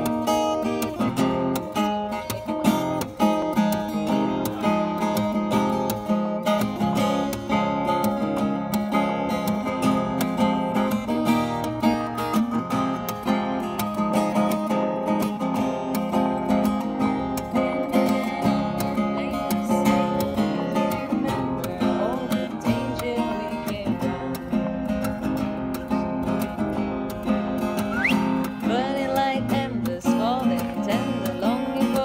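Acoustic guitar strummed and picked in a continuous rhythmic accompaniment, with no singing over it yet.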